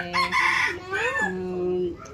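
A rooster crowing once: a rising call that ends on a long held note, heard under women's conversation.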